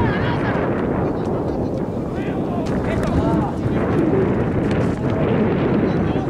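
Wind buffeting the camera's microphone: a loud, steady low rumble. Faint shouts from players and coaches on the pitch come through it now and then.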